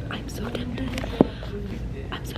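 A woman speaking softly, close to a whisper, with one sharp click about a second in.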